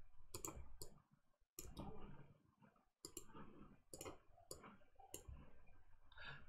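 Faint computer mouse clicks, about ten, irregularly spaced over low room noise.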